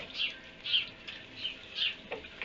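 Small birds chirping: short, high, falling chirps, about four over two seconds.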